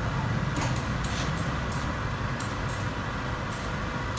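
Boiler-fed steam iron giving about eight short hisses of steam at irregular intervals, over the steady low hum of the vacuum ironing table's suction blower.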